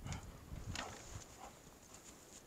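Footsteps on the wooden planks of a footbridge: a few irregular knocks and dull thumps on the boards.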